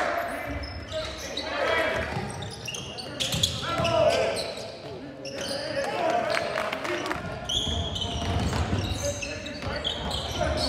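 Live basketball game sounds in a gym: the ball bouncing on the hardwood court and sneakers squeaking in short, high-pitched chirps, under indistinct shouts and chatter from players and spectators.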